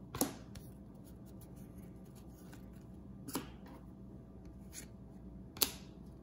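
Trading cards handled and moved through one at a time in a hand-held stack: three short sharp flicks of card stock spread apart, with quiet room tone between.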